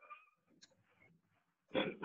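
A pause in a man's speech: near silence with faint brief sounds near the start, then his voice resumes near the end.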